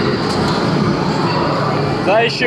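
Loud, steady din of arcade game machines.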